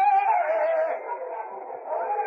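Male flamenco cantaor singing a saeta, ending a long held phrase with a wavering, falling ornament that fades out about a second in, leaving a faint, noisy background.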